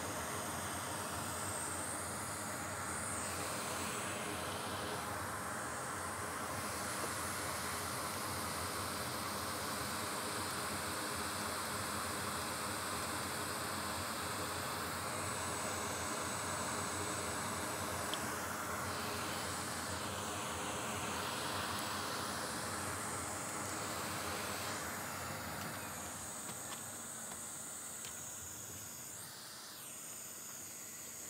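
A steady hiss of rushing air that eases off somewhat over the last few seconds.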